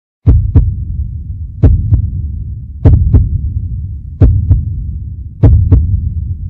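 Heartbeat sound effect: five double thumps (lub-dub), one pair about every 1.2 seconds, each followed by a low rumble that fades away.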